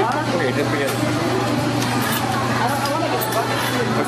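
Fast-food restaurant ambience: indistinct voices and chatter over a steady low hum.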